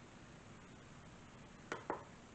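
Quiet room tone, then two brief knocks close together near the end.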